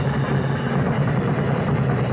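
Drum kit played in a fast, continuous roll, a dense steady wash of drums and cymbals with no separate strokes standing out.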